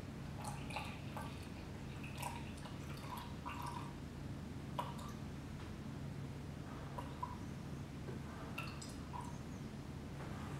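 Distilled water squirted from a squeezy wash bottle into a sample container in small, faint drips and splashes at irregular intervals, topping the sample up towards 100 ml. A steady low hum runs underneath.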